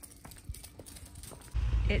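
Small dog's claws clicking and tapping on stone paving, a light scatter of taps. Near the end a steady low rumble of wind on the microphone cuts in abruptly.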